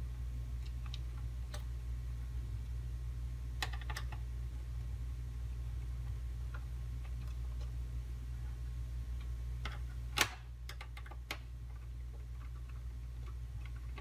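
Small, scattered clicks and ticks of a screwdriver working the screws out of the back of a radio's case, the loudest a sharp click about ten seconds in, over a steady low hum.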